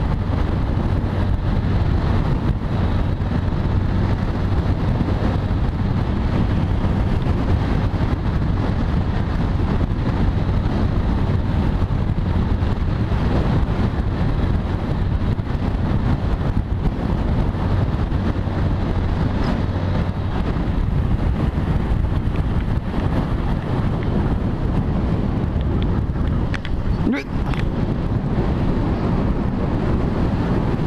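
Heavy wind rushing over the microphone of a motorcycle at road speed, with the steady drone of its engine underneath. Near the end the engine hum fades and the sound eases as the bike slows to a stop.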